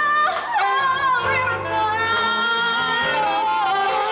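A female vocalist singing a slow melody with a long held note in the middle, over a big band accompanying her live.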